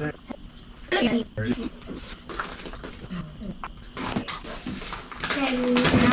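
Indistinct voices in a garage, with scattered small clicks and knocks of handling.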